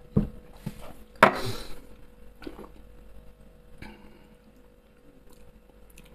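A man knocks back a shot of 69-proof absinthe: small knocks of the shot glass, then a short, harsh breath out about a second in as the spirit burns, and a light click of glass on the table later on.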